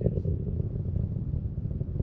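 Falcon 9 first stage's nine Merlin engines heard from far off as a loud, steady low rumble with a rough, ragged texture.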